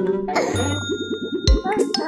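Cartoon sound effect: a bell-like ding rings about half a second in over a fast rattling run of short notes, then a low thump at about one and a half seconds.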